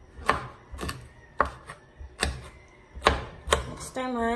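Kitchen knife slicing green beans on a wooden cutting board: about six sharp chops of the blade against the board, unevenly spaced.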